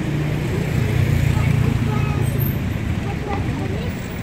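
Road traffic passing close by: a low rumble that swells about a second in and then eases, with indistinct voices of people nearby.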